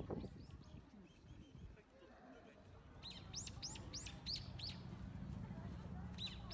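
A small bird chirping: a quick run of about six high, sharp chirps, about three a second, starting about halfway through, over a faint low background murmur.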